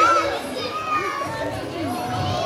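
Young children's voices, talking and calling out over one another.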